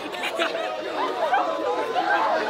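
Several people talking over one another: indistinct overlapping chatter.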